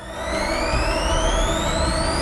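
A rising synthetic sweep: several high whistling tones glide steadily upward over a low rumble that slowly builds.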